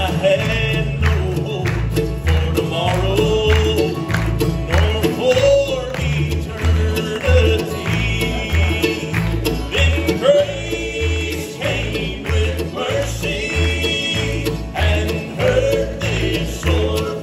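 Live bluegrass gospel band playing: acoustic guitars and mandolin over an upright bass keeping a steady beat, with voices singing the melody.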